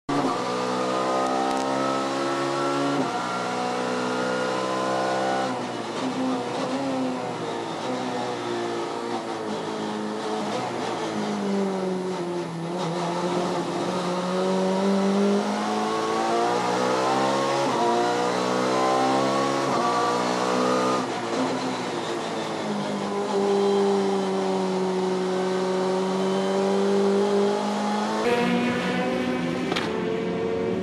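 A touring race car's engine revving hard through the gears. Its pitch climbs and drops sharply at each upshift, falls and rises again as it brakes and accelerates through corners, and holds nearly steady for a few seconds near the end.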